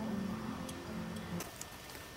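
Acoustic guitar processional music holding its last notes, which stop about one and a half seconds in; a few faint clicks are heard around them.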